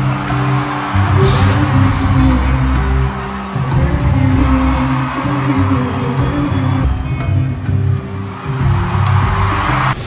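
Live concert music played loud through a venue sound system, with a heavy, stepping bass line, heard through a phone recording from the audience with crowd noise mixed in.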